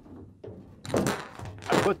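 A thunk about a second in as a thin sheet-metal reflector panel on a home-made solar cooker is handled and flexed, followed by a short noisy rattle.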